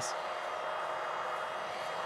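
Cooling fan of a 480 W, 0–24 V 20 A adjustable switching power supply running steadily: an even rush of air with faint steady tones. It has switched on by temperature because the supply is delivering about 21 A, near its full rated current, into a battery on charge.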